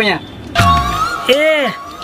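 An added comedy sound effect: a sudden whoosh sweeping up in pitch into a held steady tone, with a short pitched call that rises and falls in the middle.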